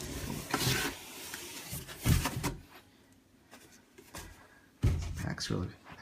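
A cardboard shipping box being opened by hand: cardboard rubbing and scraping, with a dull knock about two seconds in and another near the end.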